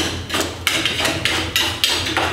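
A scraper worked quickly along the wooden end bars of honey frames held in an extractor rack, scraping off excess wax: a rapid series of sharp scraping knocks, about three a second.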